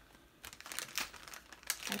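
Small clear plastic zip-top bag of stainless steel jump rings crinkling as it is handled, in irregular small crackles from about half a second in.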